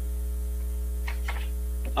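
Steady electrical mains hum in the room's microphone and sound system during a pause in talk, with a faint voice murmuring about a second in.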